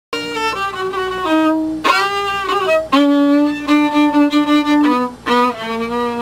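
Unaccompanied fiddle bowing a slow melody of long held notes, several lasting a second or more.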